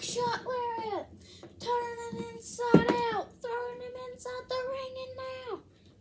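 A boy singing wordless, held notes, several in a row, each sliding down in pitch as it ends, with one sharp knock about three seconds in.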